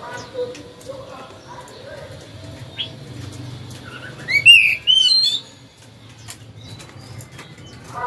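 Caged Oriental magpie-robin giving a short, loud phrase of rising whistled song notes about four seconds in. Scattered faint clicks run through the rest.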